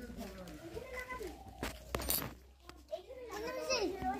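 Young children's voices calling and chattering as they play, with a few brief knocks about two seconds in.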